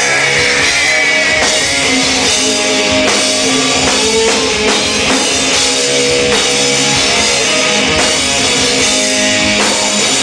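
Rock band playing live and loud: a drum kit and electric guitars in an instrumental passage, with no singing.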